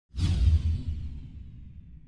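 Whoosh sound effect with a deep rumble for an animated logo reveal, starting suddenly and then fading away slowly.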